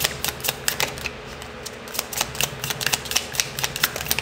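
A deck of tarot cards being shuffled by hand: a quick, irregular run of sharp card clicks and slaps, several a second.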